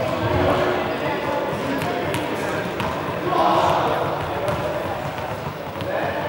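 Indistinct voices echoing in a large sports hall, with a few sharp knocks of balls bouncing on the hard floor.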